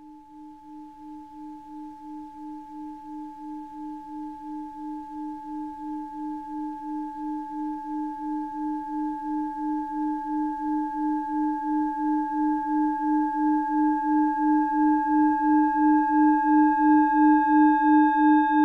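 A single sustained ringing tone with a few overtones, swelling steadily louder and wavering about three times a second; higher overtones join in near the end.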